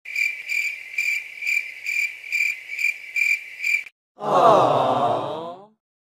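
Cricket chirping: a steady high trill pulsing about twice a second for about four seconds, stopping abruptly. Then a drawn-out, falling, groan-like voice for about a second and a half.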